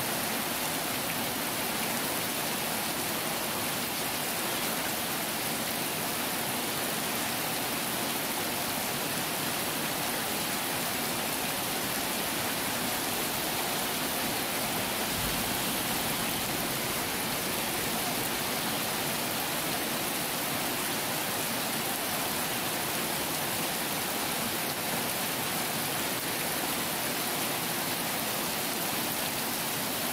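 Heavy tropical downpour: a steady, unbroken hiss of hard rain falling on the road, grass and vehicles.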